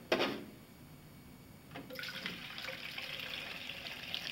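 Water poured from a plastic jug into an open-topped plastic soda bottle, a steady splashing that starts about two seconds in. A short handling noise comes at the very start.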